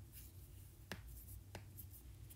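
Near silence: room tone with a few faint ticks, the clearest about a second in and another about half a second later.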